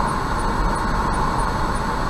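Steady road noise inside a moving car's cabin at about 65 km/h: tyres rolling on asphalt with the engine running.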